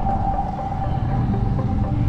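Low vehicle and wind rumble picked up by a ride-mounted action camera, under background music with long held notes that shift in pitch.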